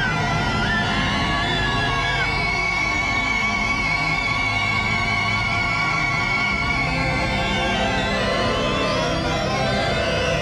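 Eerie horror-film score: long held, wavering tones, one high note sustained for several seconds in the middle, over a steady low pulse.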